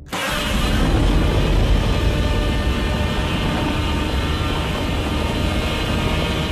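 Godzilla's roar, a film sound effect: one long, loud, rasping bellow with a deep rumble underneath, starting abruptly.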